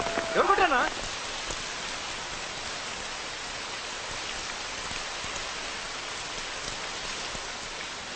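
Steady hiss of water spraying from a burst pipe and falling like heavy rain. A voice is heard briefly in the first second.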